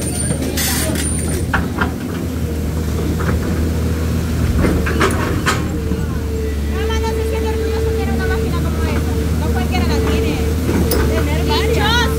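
Tracked hydraulic excavator running steadily with a constant high whine over its engine hum while its bucket digs in a rocky stream bed, with sharp knocks about a second in and again around five seconds.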